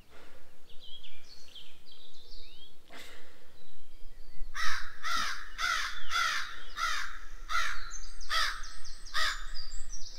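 A crow cawing: a run of about eight harsh caws, roughly two a second, through the second half. Faint small-bird chirps come before and near the end.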